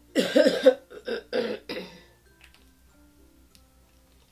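A woman coughing: one long harsh cough, then three shorter coughs in quick succession, all within the first two seconds.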